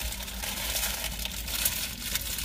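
Paper wrapper crinkling, with crunching, as a crispy taco is handled and eaten; a dense crackle begins about half a second in.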